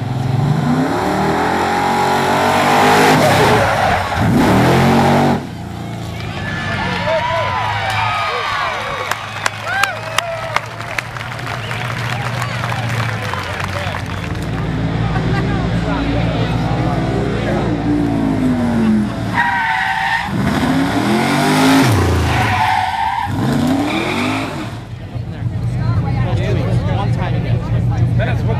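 An old drill-team racing fire truck's engine revving hard as it races off, its pitch rising and falling, then running on and revving up and down several more times.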